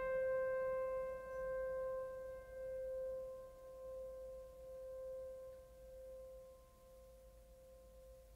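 Background music: one long ringing piano note slowly dying away, its loudness wavering gently as it fades, until it is almost gone near the end.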